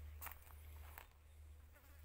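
Faint insect buzzing among mango blossoms, with a couple of light clicks about a quarter second and a second in.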